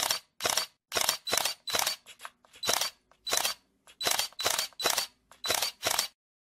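A run of camera shutter clicks, about fifteen in six seconds at uneven spacing, each short and sharp.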